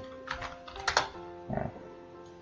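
Computer keyboard keys being tapped: a few separate clicks spread over two seconds, under soft background music with steady held notes.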